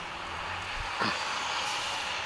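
Steady outdoor street noise, mostly distant traffic, with a short downward-sliding sound about a second in.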